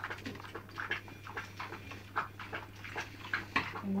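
Rolling pin worked back and forth over a sheet of dough on a floured silicone baking mat, giving soft, irregular knocks and clicks.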